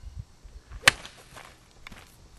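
A golf club striking an open tub of vinyl spackling: one sharp, loud smack a little under a second in, followed by a few faint knocks.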